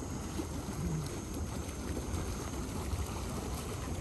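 Steady rushing noise of hot tub water churning, with a low rumble underneath.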